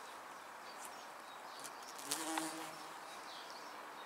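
Bees buzzing around a flowering bush, faint and steady. One bee passes close about two seconds in, its buzz briefly louder.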